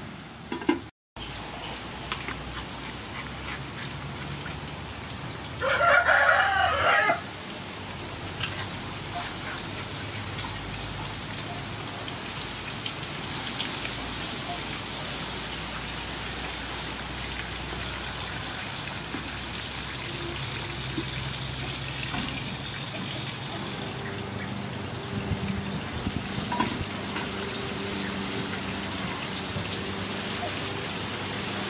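Oil sizzling steadily as whole fish fry in a wok. A rooster crows once, loudly, for about a second and a half, about six seconds in.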